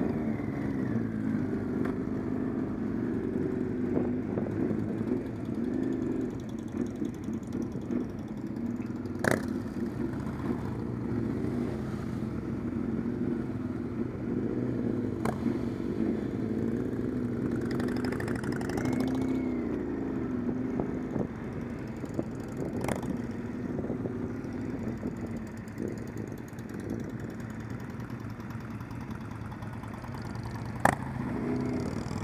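Several motorcycle engines idling and pulling away at low speed in a group, including the camera bike's own engine. The engine note rises and falls with the throttle, and three sharp clicks come through along the way.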